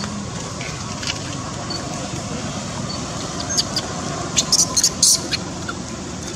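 Steady outdoor background noise, like distant traffic, with a few short sharp high clicks or squeaks about four to five seconds in.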